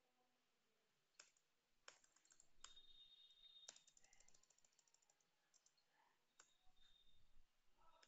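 Faint computer keyboard keystrokes: a few separate key presses, then a quick run of taps about four seconds in.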